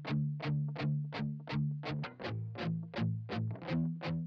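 Electric guitar chugging, processed through the Bus Glue Electric bus compressor plugin: a steady rhythm of about three strummed chords a second. The chord drops lower a little past halfway and comes back up near the end.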